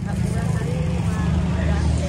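Busy market background: a steady low rumble with faint voices of people talking some way off.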